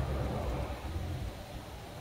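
Low, steady background rumble with faint hiss, a pause between words inside a van cabin.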